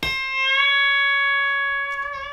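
Electric guitar playing a single note that is bent up about a semitone and then held, ringing with a long, slowly fading sustain.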